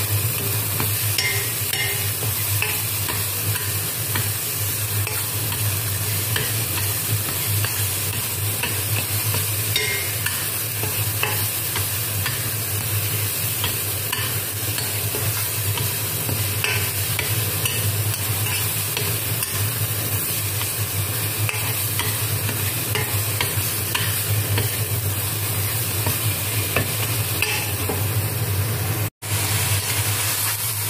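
Garlic paste frying in oil in a stainless steel wok: a steady sizzle with repeated scraping of a metal spoon against the pan as it is stirred, over a constant low hum. The sound drops out for a moment near the end.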